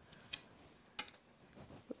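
Faint handling sounds of paper and tape on a craft desk: a few light clicks and taps with a little rustle.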